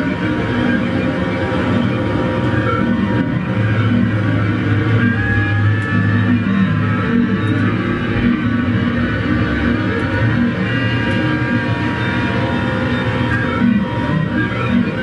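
Live noise-rock bass played through a chain of effects pedals, with electric guitar, making a dense, droning wall of distorted sound. A low bass note is held steady through the middle.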